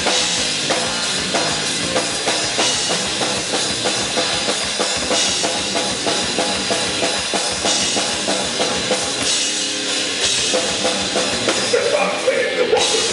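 Live metal band playing at full volume: a drum kit drives a fast, dense beat of bass drum and snare under electric guitar and bass, with cymbal crashes roughly every two and a half seconds. No vocals in this stretch.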